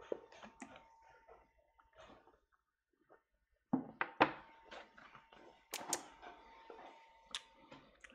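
A man drinking milk straight from a plastic gallon jug: after a quiet start, gulps and swallows with sharp clicks and knocks of the jug begin about halfway in and go on in short bursts.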